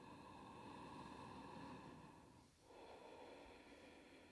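Faint ujjayi breathing: a woman's slow, audible breath drawn through a narrowed throat, one long breath of about two and a half seconds, a brief pause, then the next breath.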